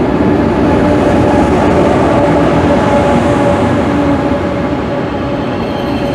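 SRT high-speed train arriving alongside the platform and slowing: a loud, steady rush of wheels and air with a steady hum over it, easing a little near the end.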